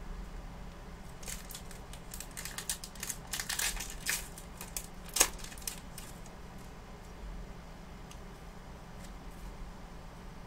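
Foil Pokémon booster pack wrapper being crinkled and torn open by hand: a run of sharp crackles through the first few seconds, with one loud snap about five seconds in, then fainter handling.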